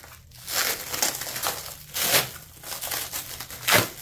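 Black plastic wrapping crinkling and rustling as hands pull it off an object, in several irregular bursts, the loudest near the end.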